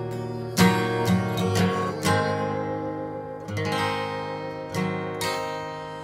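Steel-string acoustic guitar strummed in a slow blues. A few quick chord strums come in the first two seconds, then chords are left to ring and fade between sparser strums.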